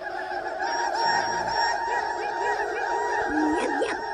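A dense, continuous chorus of many birds calling at once, starting abruptly and cutting off after about four seconds.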